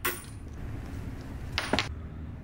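A quarter being flipped toward a cup: a sharp click at the start and a louder short clink about a second and a half in, over quiet room noise.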